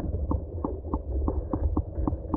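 Underwater sound inside a camera housing in a creek pool: a steady low rumble of moving water with a regular ticking, about four or five clicks a second.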